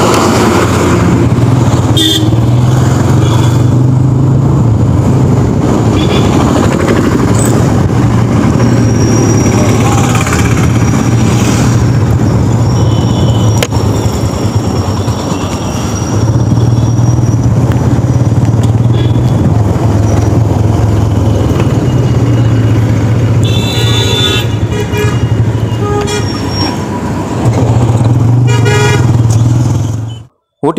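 Road traffic heard from a moving vehicle: a steady low rumble of engine and road noise, with vehicle horns honking twice near the end.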